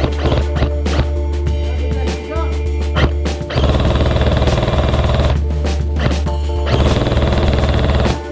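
Background music with two bursts of full-auto airsoft gunfire, each a rapid rattle of shots lasting about a second and a half. The first starts about three and a half seconds in and the second near the end.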